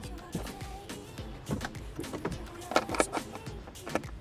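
A few scattered clicks and knocks from a Toyota Land Cruiser 200 Series folding third-row seat being handled at its latch, over background music.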